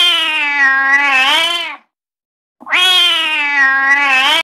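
Domestic cat meowing: two long, drawn-out meows of about two seconds each, a second apart and matching each other in shape, each dipping in pitch near its end before rising again.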